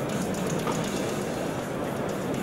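Heavy off-road military truck driving over rough ground: a steady rumble with rattling.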